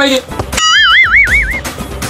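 A comic warbling sound effect: a high tone that wobbles up and down about four times over roughly a second, then a deep musical beat comes in underneath.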